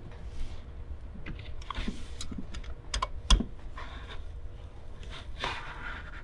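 Hex key clicking and scraping in the socket-head bolts of a high-pressure fuel pump as they are tightened a quarter turn at a time, drawing the pump down against its spring. Small irregular clicks, with a sharper one about three seconds in.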